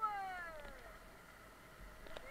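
A person's high-pitched call, one long whoop sliding down in pitch over about the first second.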